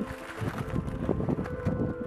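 Gusty crackling noise of wind on the microphone, mixed with the rustle of a carp bivvy's canvas being handled. Underneath runs background music with steady held tones.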